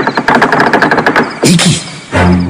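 A fast rattle of sharp clicks, about a dozen a second, that stops after about a second and a half, followed by a brief voice.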